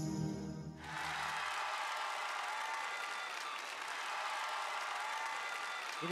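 Orchestral ballet music ends on a held chord about a second in, and audience applause takes over, steady until the end.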